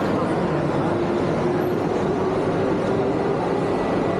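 Steady din of a busy airport terminal hall: indistinct crowd voices and machinery hum at an even level, with a faint held tone.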